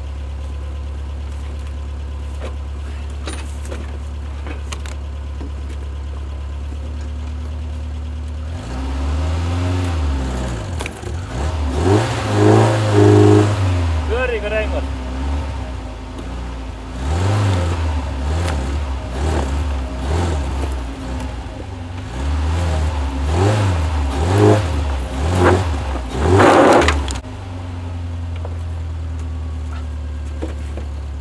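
Mercedes car engine idling steadily, then revved hard in repeated rising and falling bursts for most of the middle as the driver tries to pull the car away while it is frozen fast to the ground, before settling back to a steady idle near the end.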